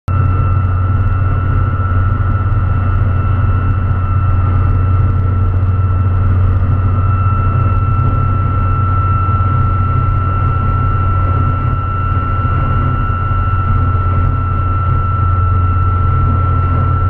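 A curved LED light bar on a Dodge Cummins diesel pickup whistling in the wind at highway speed: one steady high tone, like a jet, over the deep drone of the engine and road, heard from inside the cab.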